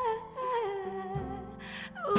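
Live band music: a harmonica played into a cupped microphone holds long notes that bend in pitch, over drums.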